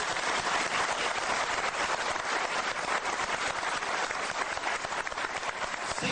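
Audience applauding: dense, steady clapping from a large crowd.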